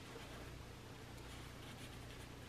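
Faint scratching of black Sharpie markers drawing on paper, over a low steady hum.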